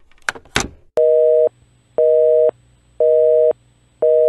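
Two short clicks, then a telephone busy signal: a two-tone beep, half a second on and half a second off, repeating three times.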